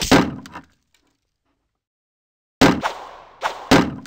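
Cartoon impact sound effects: a sharp whack right at the start that dies away quickly, then after about two seconds of silence, two heavy crashing impacts about a second apart.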